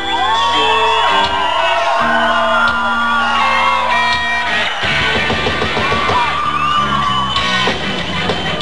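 Live rock band on stage, electric bass and guitar holding notes while voices yell and whoop over them. About five seconds in, the full band with drums kicks in hard.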